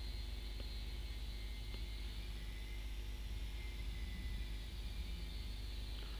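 Steady low hum with a faint hiss under it: background noise on the recording while nobody speaks.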